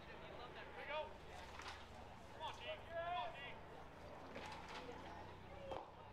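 Faint, distant voices of players and spectators calling out around a baseball field, with a short knock near the end as the pitch pops into the catcher's mitt.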